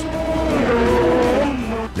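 Formula One racing car going by at speed, its engine note wavering high and then dropping steeply near the end as it passes.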